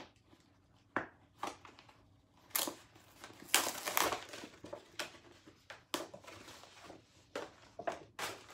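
Packaging crinkling and rustling in irregular bursts as a small rug is unwrapped and pulled out, loudest about halfway through.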